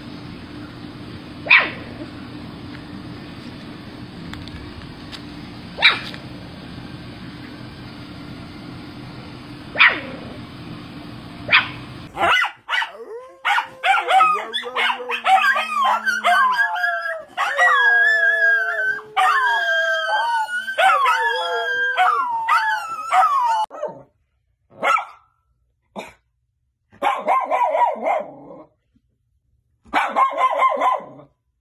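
Miniature schnauzer barking: single sharp barks about every four seconds over a steady background hum. Then, after a cut to another recording, a long run of high, wavering cries gliding up and down in pitch, and a few short bursts of barking near the end.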